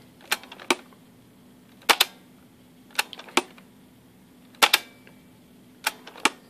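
Fostex X-15 multitracker's cassette transport clicking: about five pairs of sharp mechanical clicks, the play key engaging and the transport dropping straight back out a moment later. The deck automatically stops instead of playing, a transport fault.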